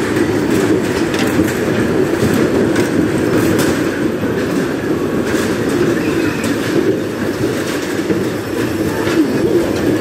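Electric bumper cars running across the ride's metal floor: a steady rumbling hum of motors and rolling wheels, with scattered short clicks.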